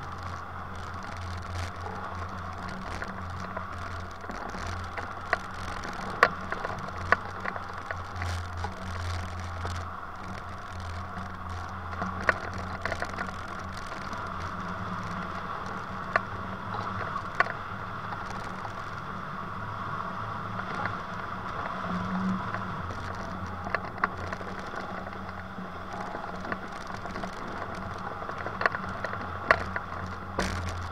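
Steady rush of airflow over a hang glider and its wing-mounted camera in flight, with scattered short clicks and rattles.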